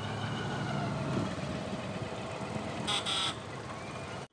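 Road traffic of motorcycles and cars, heard from within the moving traffic: a steady low engine and road rumble. About three seconds in, a brief high-pitched sound comes twice in quick succession.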